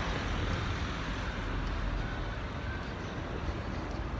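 Steady street traffic noise: a continuous low rumble of passing road vehicles.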